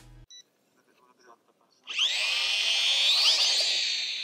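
Small toy quadcopter's motors and propellers whining as they spin up for take-off. The whine starts suddenly about two seconds in and rises in pitch twice.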